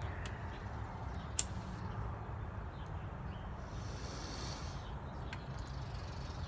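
A man drawing on a tobacco pipe and blowing out smoke, a soft breathy hiss a little past the middle, over a steady low outdoor rumble. There is a single sharp click early and a short high chirp near the end.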